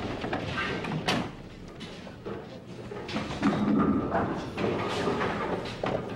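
Ten-pin bowling: a sharp knock about a second in, then the loudest sound, a clatter of bowling pins, about three and a half seconds in.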